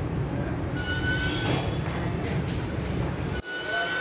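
Pec deck fly machine squealing twice, a high metal squeal from its cables and pulleys as the handles are pulled through a rep, over a steady low rumble.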